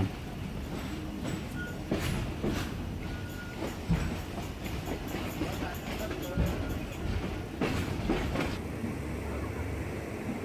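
An old passenger train carriage running on the rails, heard from inside with the windows open: a steady rumble with a few sharp knocks and clanks from the coach and track, the loudest about two seconds in, about four seconds in and near the eight-second mark.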